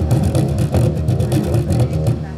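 Live band playing loud music, an electric bass guitar carrying the low notes under quick, busy percussive hits.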